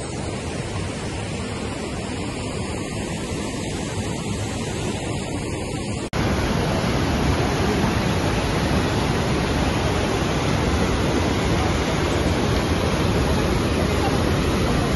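Steady rushing of a mountain waterfall and its rapids in Johnston Creek's canyon. A sudden cut about six seconds in makes the rush louder and fuller.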